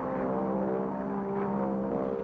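Piston-engine airplane droning steadily in flight, a constant, even engine note.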